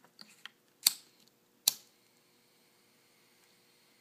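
A few faint clicks, then two sharp snaps about a second apart from small hand tools handled while trimming and melting the ends of paracord.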